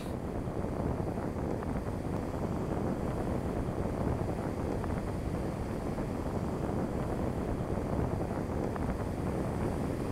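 Steady rush of breaking ocean waves mixed with wind buffeting the microphone, a constant low rumbling noise.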